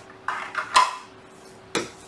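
Hard 3D-printed plastic parts set down one after another on a Snapmaker build plate: four short clattering knocks, the loudest near the middle and the last one near the end.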